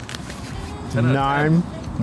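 A man's voice saying a drawn-out "nine" about a second in, after a quieter first second of background sound.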